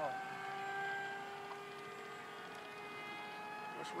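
Radio-controlled model floatplane's motor droning steadily in flight, one held pitch with its overtones.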